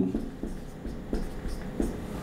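Marker pen writing on a whiteboard: a few short, faint strokes and taps.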